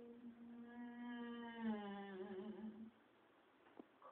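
A woman humming one long held note that slides lower about two seconds in and stops about a second before the end, followed by two faint clicks.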